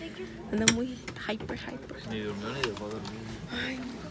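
Quiet talking from people close by, with one sharp click about two-thirds of a second in.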